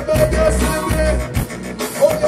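Live band music with a vocalist, heard through a concert sound system: heavy bass and drums under a held, slightly bending melody line.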